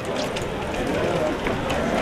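Street ambience on a pedestrian town-centre street: faint voices of passers-by and footsteps on paving, with a few short clicking steps.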